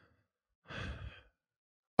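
A person's sigh: one breathy exhale about half a second long, a little under a second in.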